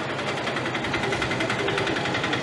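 A small motor running at a fast, even rhythm, steady throughout.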